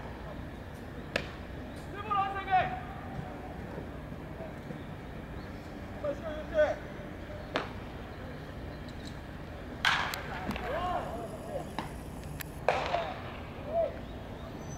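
A few sharp cracks of a baseball being pitched and struck in live batting practice, the last one near the end. Players' shouts come between the cracks.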